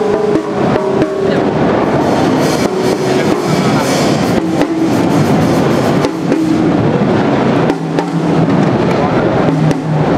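A drum kit with acrylic shells played with sticks: quick strokes on the snare and toms with cymbal hits, over crowd chatter.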